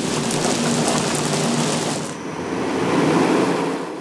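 Wood-pellet biomass furnace machinery running: a steady, loud mechanical rush from the pellet feed auger and blower. About two seconds in it turns lower and duller.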